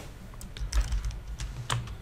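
Computer keyboard typing: about half a dozen separate keystrokes over two seconds as a command is entered at a terminal prompt.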